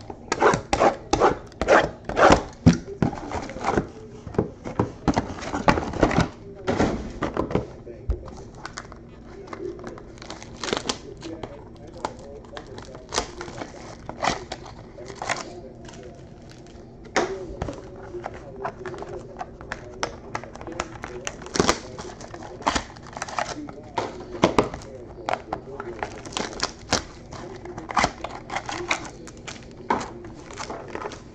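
Cardboard trading-card boxes and foil-wrapped packs being handled and set down on a tabletop. A dense run of knocks, clicks and rustles over the first several seconds is followed by scattered thunks and clicks.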